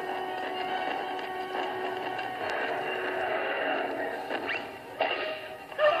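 Cartoon soundtrack played through a laptop's speakers and picked up by a phone: music runs under a squealing cry, with two sudden louder sounds near the end as the cartoon Tyrannosaurus roars.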